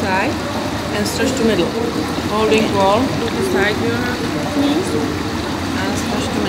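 Water lapping and splashing in an indoor swimming pool as a person's legs are moved through it, with brief indistinct voices.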